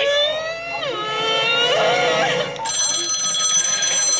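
Cartoon characters screaming in long cries that rise and fall, then, about two-thirds of the way in, a cartoon telephone ringing with a steady high ring, heard through a TV's speaker.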